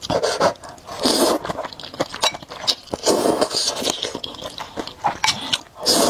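Close-miked slurping of thick noodles in spicy sauce, in several loud sucking bursts (about a second in, around three seconds, and at the end), with wet chewing clicks in between.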